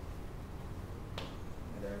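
A single sharp click about a second in, over a steady low room hum; a man's voice starts near the end.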